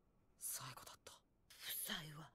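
Faint Japanese anime dialogue playing low in the mix, in two short spoken phrases.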